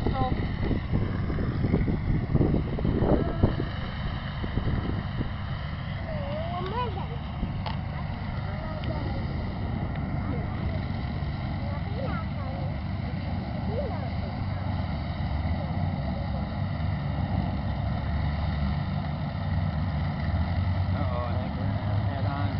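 Farm tractor engine running steadily in a low, even tone, with faint voices now and then.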